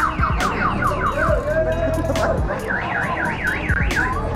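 A car alarm sounding and cycling through its tone patterns: a fast warble rising and falling about six times a second, a run of falling chirps in the first second, and the warble again near the end.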